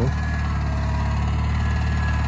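Ariens garden tractor engine running steadily at a constant speed, under load as it pulls a Brinly disc harrow through tilled soil.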